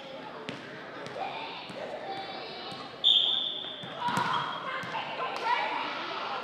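Referee's whistle blown once, a single steady shrill blast about halfway through lasting under a second, over background crowd chatter. A few sharp knocks of a volleyball bouncing on the gym floor.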